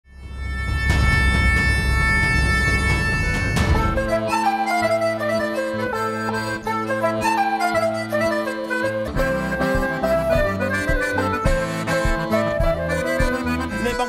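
Breton folk dance music on flute and diatonic accordion over harp, opening with a held chord for the first few seconds before the tune starts, with low drum beats joining about nine seconds in.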